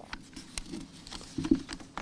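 A pause in speech filled by a few scattered faint clicks and taps over low background noise.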